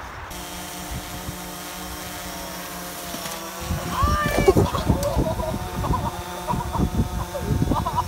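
Steady, multi-pitched buzzing hum of a small camera drone's propellers hovering nearby. From about four seconds in it is joined by people laughing and shouting.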